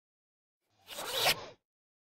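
A short rasping whoosh, like a zipper being drawn, that swells for under a second and cuts off sharply: an intro sound effect for the channel logo.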